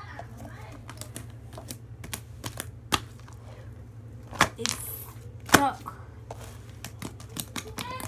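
Slime being squeezed, stretched and pressed by hand, giving a string of small clicks and pops with a few sharper pops near the middle.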